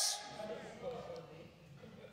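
A pause in a man's sermon: his last word fades into the hall's reverberation, a faint voice murmurs briefly, then only quiet room tone remains.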